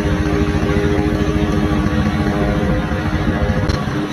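Riding lawn mower running steadily under load, its engine and spinning deck blades mulching dry leaves and blowing them out the side.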